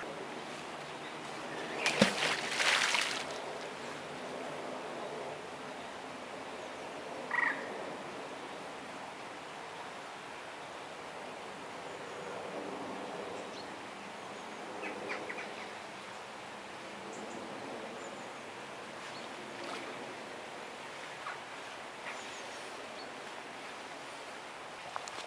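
Open-air ambience by a lake: a steady faint background hiss, with faint calls from birds, likely waterfowl, now and then. A brief louder burst of noise comes about two seconds in.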